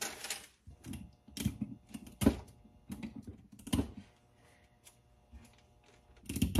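Tape being pulled, torn and pressed down onto paper: a string of short crackles and clicks that dies away after about four seconds.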